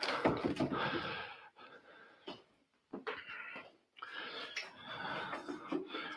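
Studio lighting gear being handled and moved: rustling and scraping with a few light knocks and clicks, pausing briefly twice.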